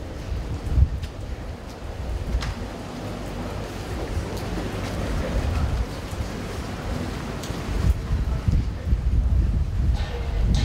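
Wind buffeting the microphone in irregular low rumbles over a steady background hiss, with the rumbling stronger near the end.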